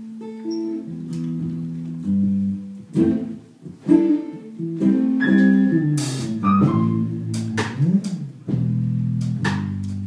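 Live jazz band music led by plucked guitar with a bass line underneath, punctuated by sharp drum and cymbal hits.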